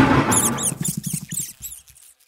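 A sharp crash that rings away, then a rapid run of high rat squeaks, about five a second, fading out near the end.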